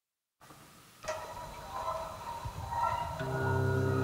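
Music begins about a second in with mid-range melodic notes. About three seconds in, a low sustained bowed note joins, played on a homemade guitar-cello: an acoustic guitar body strung and bridged like a cello.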